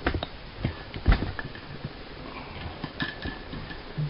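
A few light clicks and knocks from handling, the loudest about a second in, over faint room noise in a small bathroom.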